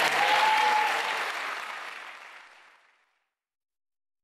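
Audience applauding, fading away to silence about three seconds in.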